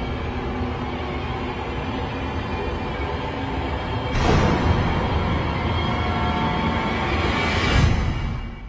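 Soundtrack music from a TV drama's score, full and sustained, surging sharply about four seconds in and building in a rising swell to a peak at the very end.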